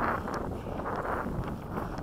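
Wind buffeting the microphone: a low, even rumble with no pitched sound in it.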